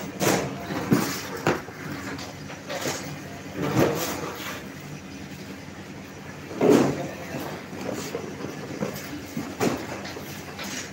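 Okra pods rustling and clattering as gloved hands scoop and sweep handfuls from a heap and drop them into cardboard boxes. The knocks come irregularly, the loudest about two-thirds of the way through, over a steady low hum.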